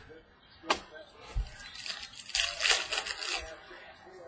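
Trading cards and a foil pack wrapper handled by hand. A sharp click comes just under a second in and a soft knock follows, then a stretch of crinkly rustling lasts about a second and a half.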